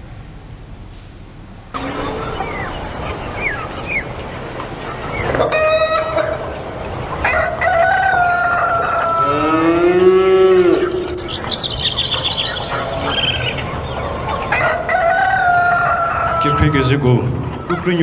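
A fowl giving drawn-out, wavering squawking calls that start suddenly about two seconds in, with a long rising-and-falling, crow-like call near the middle.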